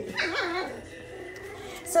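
Mini goldendoodle puppies yipping and whimpering as they play, a few short high calls in the first half second, then a softer drawn-out whine.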